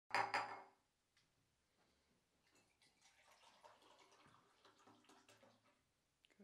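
Water being poured from one clear plastic cup into another by a hand shaking with essential tremor: a faint, uneven trickle broken by small splashes and clicks. Two loud knocks in the first second.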